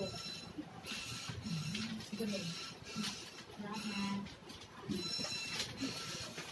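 Quiet, indistinct talking, in short broken phrases with no clear words.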